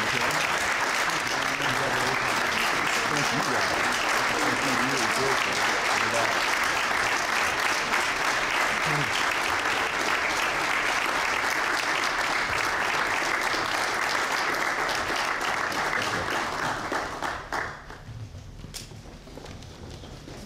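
A large audience applauding steadily, the clapping stopping abruptly near the end.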